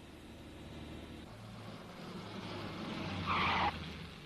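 Car engine running steadily during a chase, with a short tyre squeal about three seconds in, the loudest moment.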